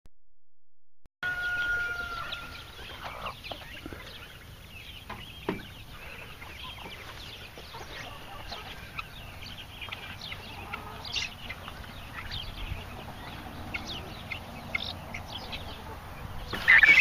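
Poultry peeping and clucking, many short high calls scattered throughout, with one longer held call about a second in.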